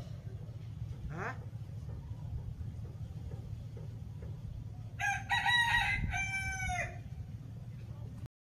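A rooster crowing once, a call of about two seconds that rises and then falls, starting about five seconds in, over a steady low rumble.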